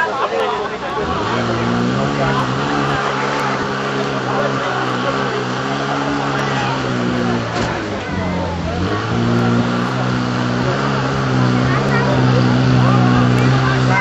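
Engine of a portable fire pump running hard and steady while it drives water through the attack hoses. Its pitch sags about eight seconds in and climbs back within a second.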